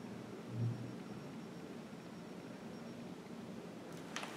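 Quiet room noise, with a short low hum about half a second in.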